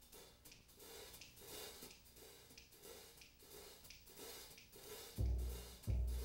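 Jazz accompaniment starting up: faint, quick, evenly repeating percussion ticks for about five seconds, then loud low bass notes come in near the end.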